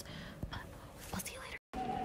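Hushed whispering voices with a few soft knocks, broken off by a short dropout near the end.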